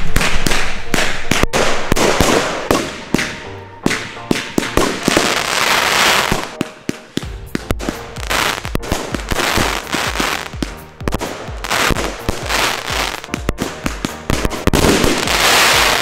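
A large consumer firework battery (cake) firing: a dense, rapid string of launch shots and bursts in the sky, loudest in the first few seconds.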